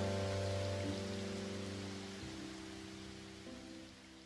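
Music fading out: held piano notes dying away over a steady hiss of rain.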